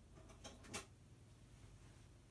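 Near silence: room tone, with two faint clicks in the first second.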